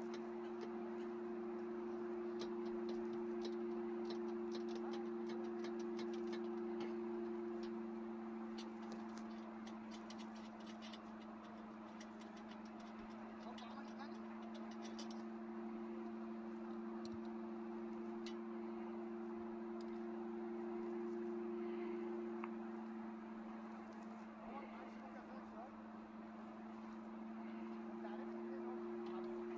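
A hand ratchet with a socket clicking in quick runs through roughly the first half, loosening the lower bolt of the dashboard's steel support bar, then only a few scattered clicks. A steady low two-note hum runs underneath throughout.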